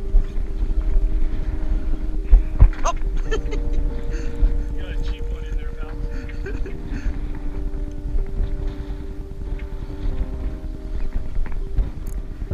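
Steady mechanical hum from the sportfishing boat, with low wind rumble on the microphone, people's voices in the background and a few scattered knocks.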